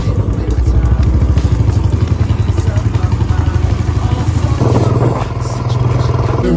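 Royal Enfield Bullet's single-cylinder engine running as the motorcycle rides along, with a steady, rapid, even thumping beat.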